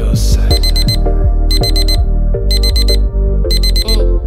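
Digital alarm clock beeping in quick groups of four, one group each second, over a song's drum beat and bass.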